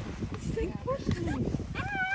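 A child's high-pitched wordless voice sounds, ending in one long rising-then-falling squeal, over a low wind rumble on the microphone.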